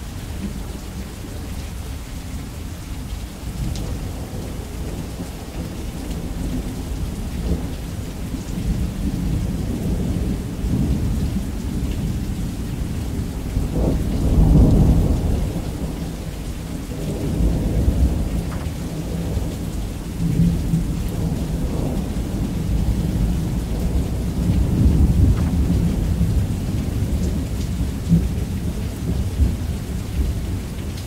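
Thunderstorm: steady rain with low thunder rumbling, swelling loudest about halfway through and again in several smaller waves after.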